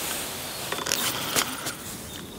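Fixed-spool reel on a carp rod being wound in to bring the rig back, a soft scraping whir with a few light clicks.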